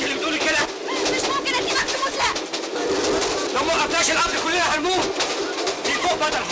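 Several people talking at once in excited, overlapping voices, with no clear words, over the steady running noise of a train.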